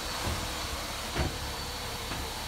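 Steady low rumble and hiss of outdoor background noise, with one short knock a little over a second in.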